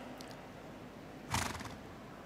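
A horse at the walk gives one short, fluttering snort through its nostrils about halfway through. Otherwise there is only faint arena background.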